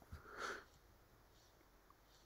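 Near silence with one short, faint sniff through the nose about half a second in.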